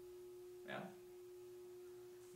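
Faint room tone with a steady hum at one pitch throughout, under a single short spoken word.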